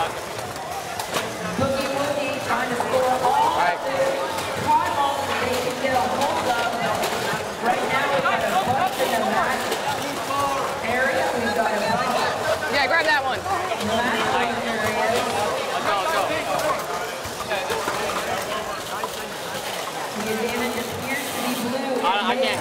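Many people's voices talking and calling out over one another, a crowd's chatter with no single clear speaker.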